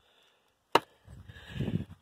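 Footsteps on loose rocks and gravel: a single sharp clack of stone on stone about three-quarters of a second in, then soft, uneven crunching steps.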